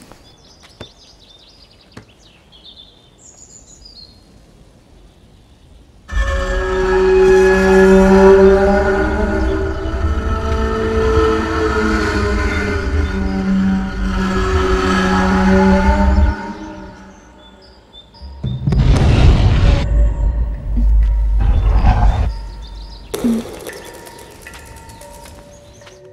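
Faint bird chirps, then about six seconds in a loud horror-film score cuts in: sustained chords over a deep low rumble for about ten seconds. After a short dip come several loud noisy hits with heavy low end, which then fade away.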